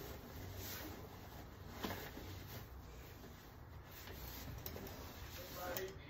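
Faint rubbing and rustling as the bassinet's fabric-covered rim is handled, with one small click about two seconds in.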